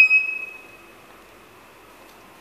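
KONE elevator's electronic chime: a high, pure ding that rings out and fades over about a second and a half, the second of two dings.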